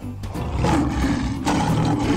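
A tiger's roar sound effect, one long rough roar, played over background music.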